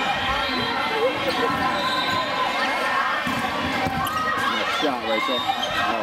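Indoor volleyball rally in a large gym: the ball struck several times by passes and sets, with players and spectators calling out over a steady background of crowd voices and shoe squeaks.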